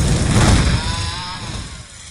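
A deep, noisy thunder rumble sound effect that fades away steadily, used in the intro of a hip-hop beat.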